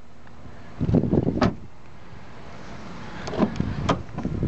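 Hatchback car doors being worked: a door shut with a thud and latch click about a second in, then latch clicks and a thump near the end as the front passenger door is opened.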